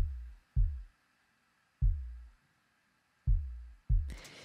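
Soloed synthesized kick drum playing five hits in an uneven, syncopated pattern. Each is a deep, low thump that drops in pitch and fades over about half a second. The attack lacks punch, so the kick struggles to come through the mix and may be inaudible on computer speakers.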